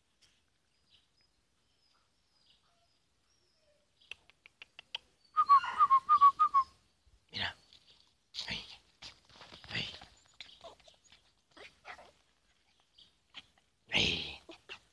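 A puppy giving a quick run of high-pitched yips, about six in a second and a half, about five seconds in. This is followed by irregular scuffling and scratching on dry ground as it plays at a person's feet.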